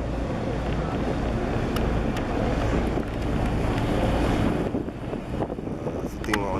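Wind buffeting the microphone aboard a moving boat, over a steady rush of engine and water noise. It eases a little near the end.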